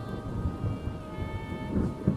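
Ambient background music: several sustained held notes that shift to a new chord about a second in, over a low rumbling noise bed.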